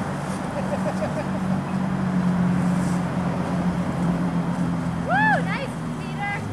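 Steady outdoor hum and noise with a low engine-like drone. About five seconds in, a child gives one short high squeal that rises and falls.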